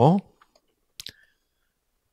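A pause after a man's word ends, broken about a second in by one short, sharp click, with a fainter tick right after it.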